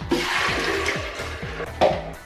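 Water pouring from a large plastic bottle, a steady splashing pour that fades off in the second half, over background music.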